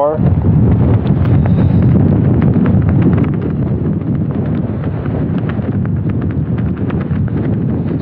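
Strong gusting wind of around 28 mph buffeting the microphone as a loud, rough rumble, scattered with many small sharp crackles. It is strongest for the first three seconds or so, then eases a little.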